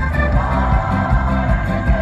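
Live rock band playing an instrumental passage with no vocal: a steady drum and bass beat under sustained higher notes that glide briefly about half a second in.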